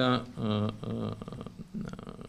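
A man's voice speaking between phrases in short, untranscribed bits, with a low drawn-out hesitation sound near the end.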